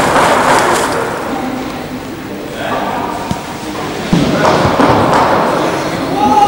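Indistinct voices and general noise in a large hall, with a sudden thump about four seconds in.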